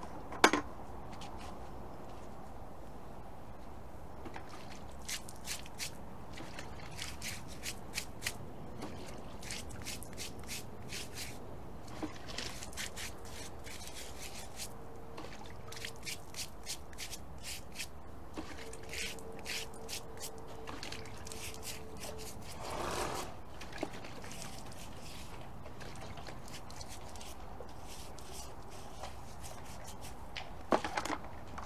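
Stiff brush scrubbing the underside of a wet horse's hoof in runs of short, quick strokes with pauses between, cleaning mud out of the sole and around the frog.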